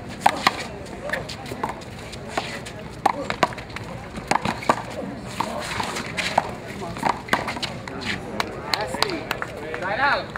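Handball rally: the rubber ball is struck by hand and smacks against the concrete wall and court in a run of sharp, irregular cracks.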